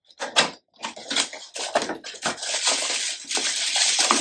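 A small cardboard box being opened and its packaging handled to take out a plug adapter: a run of clicks and taps, then a steady crinkling rustle from about two seconds in.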